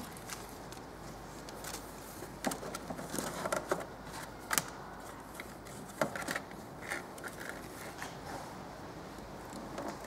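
Hands handling a small plastic tuning module and its cable in an engine bay: quiet, scattered clicks and rustles as it is positioned for mounting.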